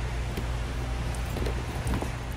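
Steady low machine-like hum under a background hiss, with a few faint clicks and rustles from plastic-windowed cardboard ornament boxes being handled.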